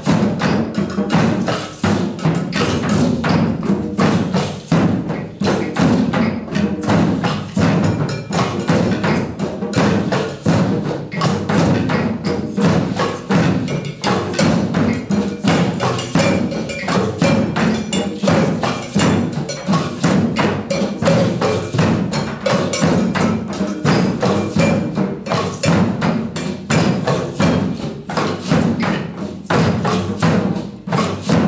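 Group hand drumming in a drum circle: djembes, a large double-headed bass drum and frame drums beating a steady, dense rhythm together, with sharp wooden clicks on top.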